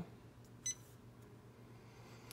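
One short, high beep from the Janome Memory Craft 550E's touchscreen as a button is pressed, about two-thirds of a second in, over faint room tone.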